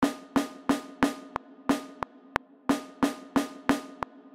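Snare drum hits playing the binary rhythm for lowercase z (0-1-1-1-1-0-1-0) twice: four quick strikes, a gap, one more strike, then the same pattern again, about three strikes a second. Short sharp clicks sound in some of the gaps.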